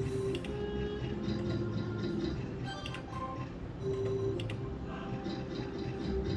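Novoline slot machine sound effects during free spins: electronic jingle tones and sharp ticking clicks as the reels spin and stop, and line wins count up on the credit display.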